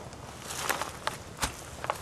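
Irregular footsteps over rocky ground: scattered short crunches and clicks, uneven in spacing and strength.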